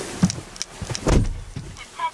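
Clicks and handling sounds inside a car, with a heavy, low thud about a second in.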